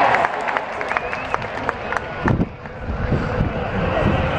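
Outdoor crowd of spectators chattering, with scattered hand claps in the first couple of seconds and a dull thump about halfway through.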